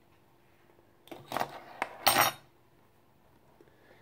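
Plastic measuring spoons clicking and clattering against a metal sieve as salt is tipped in: a few light clicks, then a louder clatter about two seconds in.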